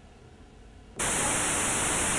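Quiet room tone, then about a second in a loud, steady hiss of TV static cuts in suddenly, brightest at the top: a snow-screen static sound effect used as a transition.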